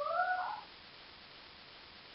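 A single short, high-pitched animal call with a curling pitch near the start, then faint room tone.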